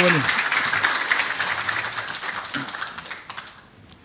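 Audience applause, a dense patter of many hands clapping that dies away over about three seconds.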